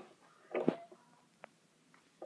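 Brief handling noises as a fleece onesie is moved about close to the microphone: a soft bump about half a second in and a small click near the middle.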